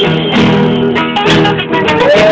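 Acoustic guitar playing an instrumental passage, with strummed chords and plucked ringing notes.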